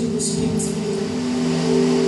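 Background instrumental worship music: a soft keyboard chord held steady, with a few faint breathy hisses over it.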